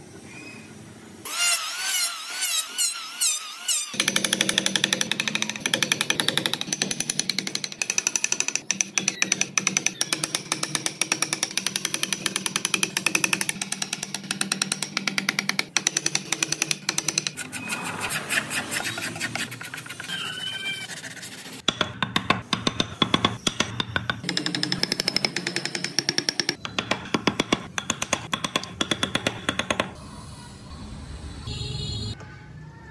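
A flat carving chisel cutting into wood in a fast, unbroken stream of taps, like a small jackhammer. The taps pause for a few seconds past the middle, then resume. A short, high warbling sound comes just before the chiselling begins.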